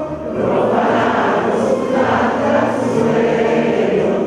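Many voices singing together in chorus.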